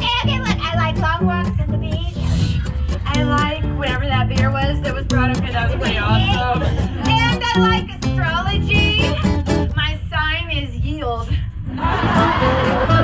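A woman's singing voice carrying a song over a plucked-string accompaniment that keeps a steady beat.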